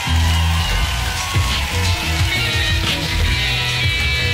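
Live rock band playing an instrumental passage, with strong, changing bass notes under guitar.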